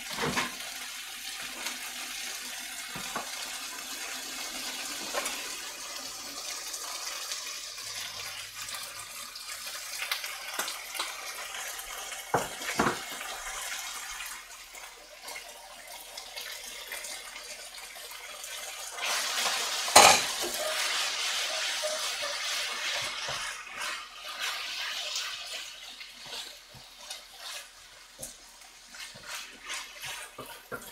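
Noodles and vegetables sizzling in a frying pan as they are stir-fried, with a wooden spatula and a metal utensil scraping and clicking against the pan. A few knocks sound about halfway through, and the loudest knock comes about twenty seconds in.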